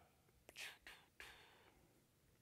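Near silence, broken by three faint, short breathy sounds from the presenter at the microphone, the last one a little longer.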